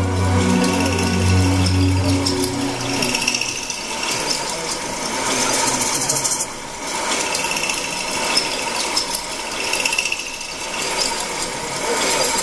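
Recorded show soundtrack: low ambient music fades out about two and a half seconds in, leaving a dense clicking, rattling texture like a mechanism or shaker.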